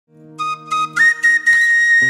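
Side-blown bamboo flute (bansuri) playing the intro of a Bangla folk song: two short notes, then a long held high note from about a second in, over a low drone during the first second.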